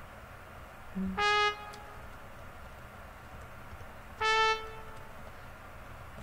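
Two short sampled trumpet notes from MuseScore 3's note playback, sounding as notes are entered one at a time into the trumpet part: one about a second in, just after a brief lower tone, and a slightly higher one about four seconds in.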